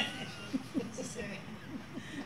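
Faint, soft chuckling and murmured voices in a lull between speakers.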